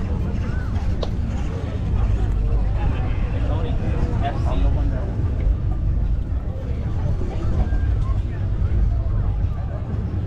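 Chatter of people talking in a crowd over a steady low rumble.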